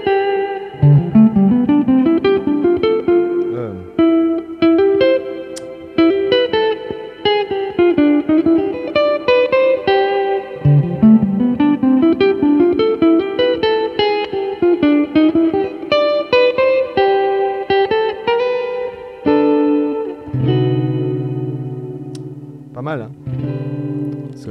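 Electric guitar playing fast single-note jazz lines over a ii–V–I (Dm7–G7–Cmaj7), with rising arpeggio runs about a second in and again about eleven seconds in. Near the end a chord is struck and left ringing: a B major over a C bass.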